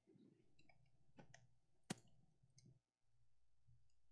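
Near silence: room tone with a few faint clicks and small handling sounds, the sharpest click about two seconds in.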